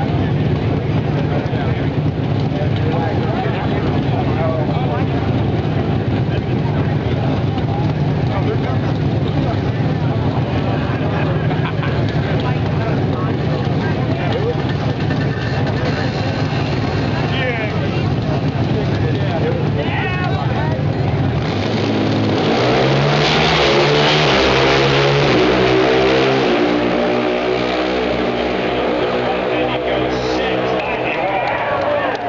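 Drag-racing engine running steadily, then from about 21 seconds in it accelerates hard, its pitch climbing in steps and dropping back with each gear shift as it runs down the strip.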